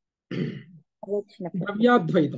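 A man's voice speaking in a lecture, starting on the next verse after a short pause.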